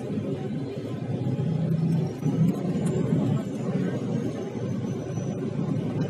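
Steady low running rumble of a moving vehicle heard from inside its cabin, with a faint high whine that drifts slightly in pitch.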